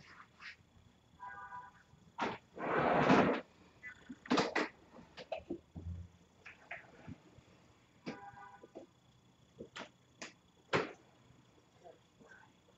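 A person sniffing and blowing their nose into a tissue. The longest, loudest blow comes about three seconds in, with short nasal honks and quick sniffs around it.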